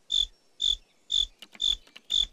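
Cricket chirping: short, evenly spaced high chirps, about two a second, made by rubbing the rough edge of one wing over the sharp edge of the other.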